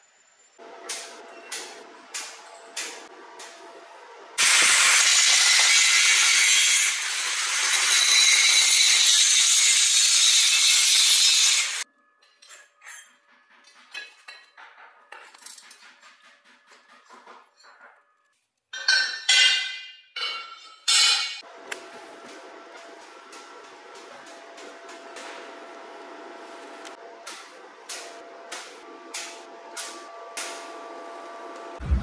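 Lengths of steel square tubing clinking and knocking as they are set down on a concrete floor. A power tool cuts through the steel tube in a loud, steady run of about seven seconds. Further metal clinks and a few short loud bursts follow.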